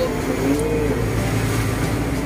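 Boat's engine running, a steady low drone heard from on deck.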